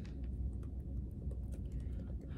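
Typing on a laptop keyboard: a few scattered, irregular key clicks over a low steady hum.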